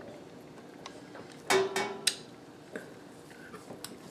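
An ice cream scoop clicking and scraping as a scoop of raw ground-beef meatball mixture is dropped onto an enamelled broiler pan. The loudest clatter, with a brief ring, comes about a second and a half in, followed by a few lighter clicks.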